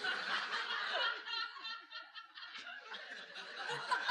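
Audience laughing at a joke: many voices laughing together, which thin out about two seconds in and pick up again near the end.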